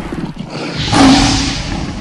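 Lion roar sound effect in an animated logo intro. It swells to its loudest about a second in and trails off over a low rumble.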